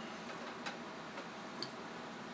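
Quiet, steady room hum with two faint, light ticks about a second apart.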